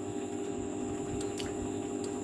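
A pause in speech, filled by a steady, even background hum with a faint click about 1.4 seconds in.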